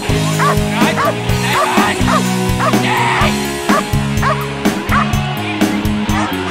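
A Belgian Malinois yipping and barking in short, high-pitched yelps, about three a second and mostly in the first half, over a rock music soundtrack with guitar.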